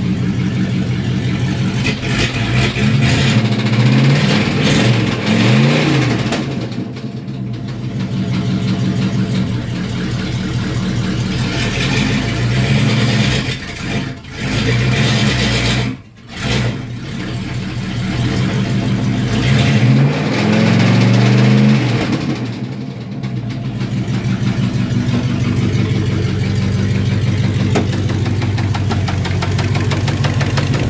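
Car engine idling and being revved up hard several times, the pitch rising and falling with each blip, with two brief sudden drops in level near the middle. It is being run up to bring out a knock that the owners are trying to pin on either the transmission or the engine.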